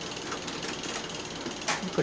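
Screw cap being turned on an amber glass reagent bottle: faint scraping and small clicks, with one short, sharper scrape near the end, over steady room noise.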